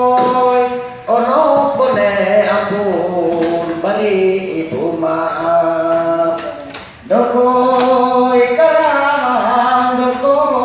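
A man singing a Dongkoi, the traditional Dayak song of North Barito, unaccompanied into a microphone, in long held, wavering phrases with short breaths about a second in and at about seven seconds.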